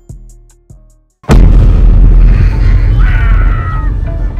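A music track with a drum beat cuts out a second in. After a brief silence, a loud boom sound effect hits and leaves a long low rumble.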